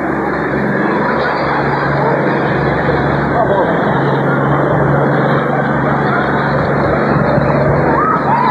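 A police water-cannon truck (a Rochabús) running with a steady engine hum under a dense, continuous rush of noise. Scattered shouting voices come through, and the hum grows stronger about halfway through.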